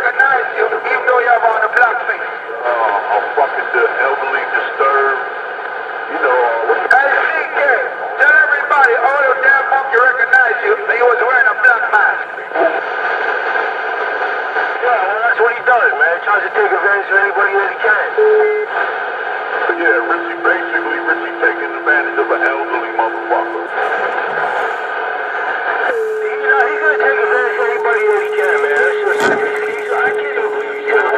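Thin, muffled voices talking through a small speaker, too unclear to make out words. A steady low tone is held for a few seconds in the middle, and another runs near the end.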